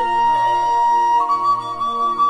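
Instrumental passage of a Vietnamese ví dặm folk-song arrangement, without singing. A flute holds one long note, then steps up to a higher held note about a second in, over a soft sustained accompaniment.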